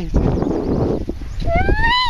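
A toddler's short rising squeal near the end, over wind rumbling on the microphone, with a rush of wind noise in the first second.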